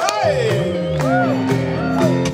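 Live rock band playing an instrumental passage: sustained organ tones over the band, with a sharp drum stroke at the start and a few rising-and-falling shouts from the crowd.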